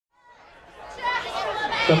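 People's voices chattering, fading in from silence over about the first second.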